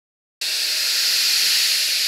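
Intro sound effect for an animated logo: a loud hiss that starts abruptly about half a second in and holds steady, beginning to fade near the end.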